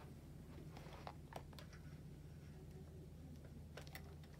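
Near silence: a steady low room hum, with a few faint clicks and light knocks of handling about a second in and again near the end.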